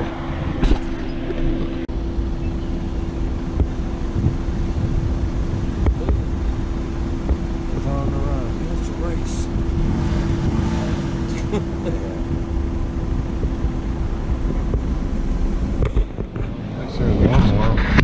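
Car running slowly along a road, a steady low hum and rumble with wind buffeting the microphone. The hum drops out about two seconds before the end, and faint voices come through around eight and ten seconds in.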